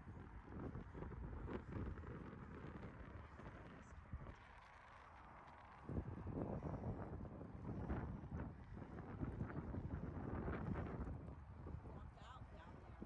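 Wind buffeting the phone's microphone in uneven gusts, easing off briefly about four seconds in before picking up again.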